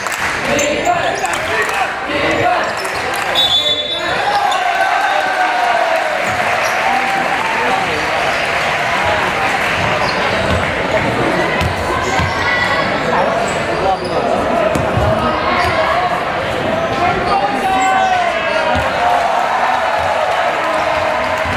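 Basketball bouncing on a hardwood court over the constant chatter and shouting of players and spectators in a large sports hall.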